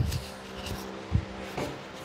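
Handling noise from a Rode Wireless ME clip-on wireless microphone being tucked under a shirt while it records: a thump at the start, fabric rubbing against the mic, and a soft knock a little after a second in.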